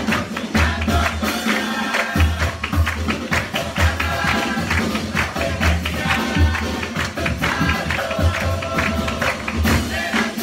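Uruguayan murga music: a group of young voices singing together over a steady beat of bass drum and cymbals.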